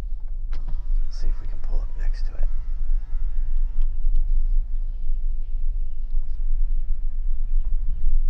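Low, steady rumble of a car heard from inside the cabin, with some faint voice sounds in the first couple of seconds.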